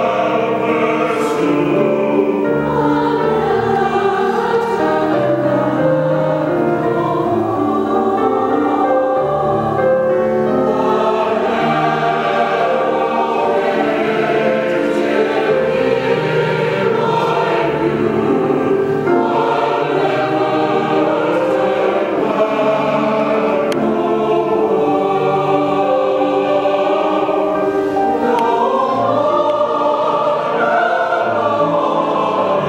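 Church choir of mixed men's and women's voices singing an anthem, sustained and unbroken.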